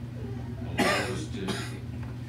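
A person coughing: one loud cough about a second in and a smaller one half a second later, over a steady low hum.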